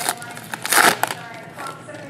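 Foil trading-card pack wrapper being torn and crinkled open by hand, a loud crinkling rustle about three-quarters of a second in, then softer rustling as the cards are pulled out.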